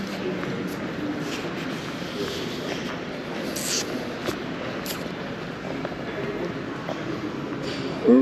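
Steady background hubbub of a large, hard-surfaced showroom, with faint indistinct voices and a few light taps and clicks about halfway through.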